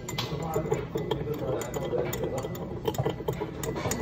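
Metal spoon stirring coffee in a glass, clinking against the sides many times at an uneven pace.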